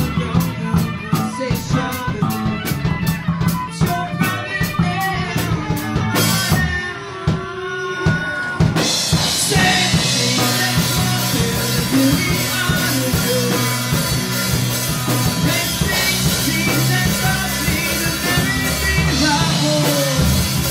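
Rock band recording playing an instrumental passage: a regular drum-kit beat over a steady bass line. About six seconds in the cymbals drop out for a couple of seconds, then the full band comes back in brighter and fuller at around nine seconds.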